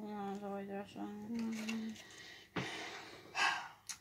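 A woman's voice in two long, steady hums, then a short sharp knock and a quick breath near the end.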